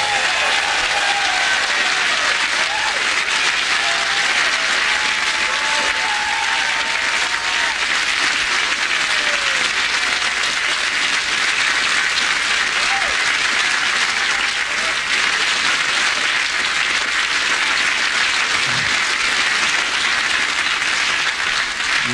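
Large studio audience applauding steadily at the end of a song.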